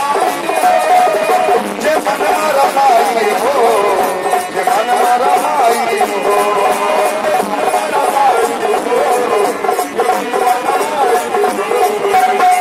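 Live Bhojpuri devotional bhajan music: a harmonium plays a sustained, wavering melody over a drone, driven by a dholak and a steady, fast jingling hand-percussion beat.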